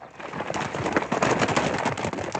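Horses galloping off, their hooves making a dense, fast clatter that builds up in the first half second.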